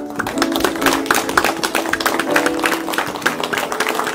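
Grand piano playing a steady melody, with scattered hand clapping from the congregation throughout.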